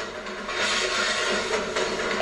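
Something being poured into a bowl: a steady rushing pour that starts about half a second in and runs on.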